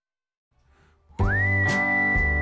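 Near silence, then a little over a second in a background music track starts: a whistled tune glides up and holds a high note over a steady accompaniment with a regular beat.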